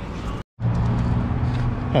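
Steady outdoor background noise with a low hum, broken by a brief dead-silent gap about half a second in where the recording cuts.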